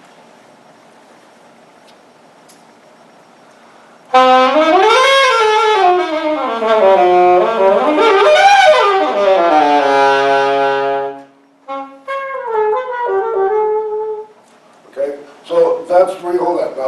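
Alto saxophone played live: after a few seconds of room tone, a loud phrase about four seconds in that sweeps up and down, then steps down to a held low note, followed by a shorter second phrase. A man's voice comes in near the end.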